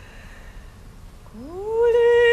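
An operatic voice slides up from low into a held high note after a short, nearly quiet pause, growing louder as it settles.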